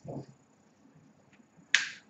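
A single sharp snap about three-quarters of the way through, short and bright with a brief decay. It follows a short muffled sound at the very start.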